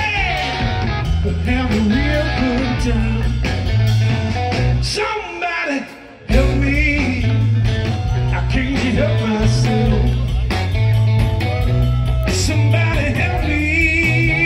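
Live electric blues band playing loud: electric guitars, bass, drums and organ, with a singer. About five seconds in the band drops out for a moment, then comes back in all together with a hard hit a second later.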